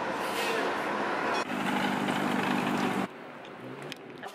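City street traffic noise. A steady rush of vehicles changes abruptly about a second and a half in to a steadier hum with a low drone, then drops quieter near the end.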